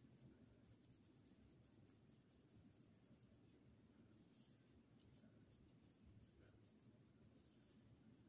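Near silence, with faint, irregular swishes of a paintbrush spreading thick paint over watercolour paper.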